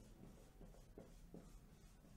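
Faint squeaks of a marker pen on a whiteboard, a few short strokes in quick succession as small circles are drawn.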